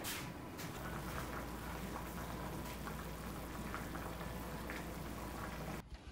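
Food cooking on a tabletop gas stove: a steady crackling, bubbling sound with a low hum beneath it, cutting off abruptly just before the end.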